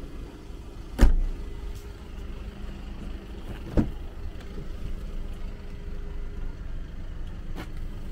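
Volkswagen Golf hatchback tailgate shutting with a heavy thud about a second in, followed by a lighter knock a few seconds later and a faint click near the end, over a steady low hum.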